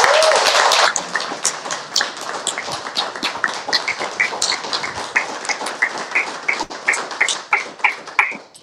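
Audience applauding. The clapping is heavy for about the first second, then thins out to scattered claps that fade.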